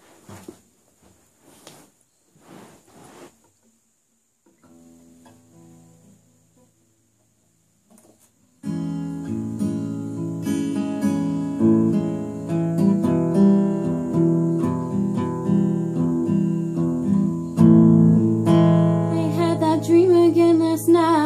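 A few soft rustles and knocks, then a quietly ringing guitar chord. From about eight and a half seconds in, a steel-string acoustic guitar plays a steady picked intro, slightly out of tune.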